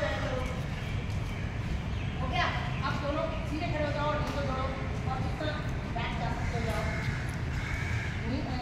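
Indistinct talking by several people, over a steady low background rumble.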